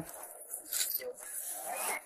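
Footsteps and the rub of uniform and gear on a chest-worn body camera as the officer walks, with a faint voice in the background.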